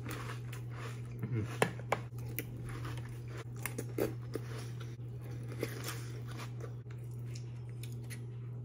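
A person chewing a mouthful of frosted corn flakes in milk, with scattered soft crunches, over a steady low hum.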